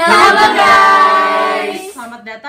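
Several voices singing one long held note together, starting suddenly and fading out just before two seconds.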